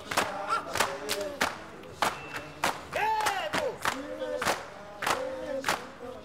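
A group of men chanting and shouting to a Zulu ngoma dance, over sharp percussive beats that come about one to two a second. One long shout rises and falls about three seconds in.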